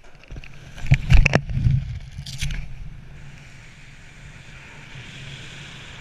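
Rushing air and buffeting on a BASE jumper's camera just after leaving a bridge, as the parachute opens: a burst of loud flapping and knocks about a second in, a shorter one near two and a half seconds, then a steady rush of air under the open canopy.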